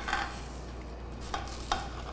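A chef's knife cutting down through watermelon onto a glass cutting board: a few short, crisp cuts, two of them close together about a second and a half in.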